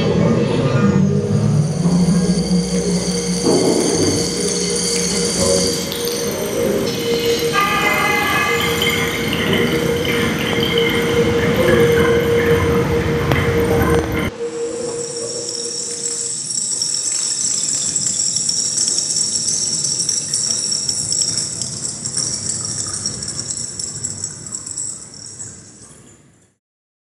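Experimental sound-art piece: dense layered drones with a held mid tone and several high steady tones. About fourteen seconds in, the low part cuts off abruptly, leaving the high tones, which fade out at the end.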